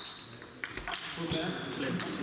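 A table tennis ball gives a few sharp pings off bats and the table as a rally plays out, with voices in the hall.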